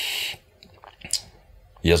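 A man's sharp breath in, then a few small mouth clicks during a pause, before he starts speaking again near the end.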